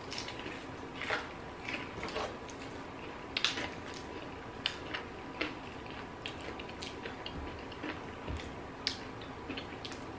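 Close-up chewing and wet lip smacks from someone eating a boneless chicken wing dipped in ranch, heard as irregular short smacks and clicks.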